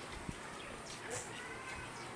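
Faint background noise with a few soft, short clicks.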